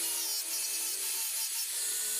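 Angle grinder with a sanding disc running against a wooden knife handle, grinding and shaping the wood. The motor gives a steady high whine over the rubbing of the disc on the wood.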